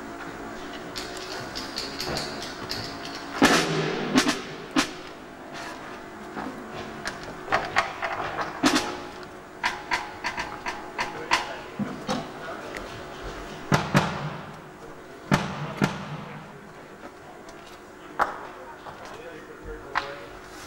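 Drum kit being struck in scattered single hits and short clusters, as during a soundcheck. A steady amplifier hum and indistinct voices sit underneath.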